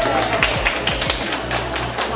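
A small group of people clapping, with separate, uneven claps heard, over background music.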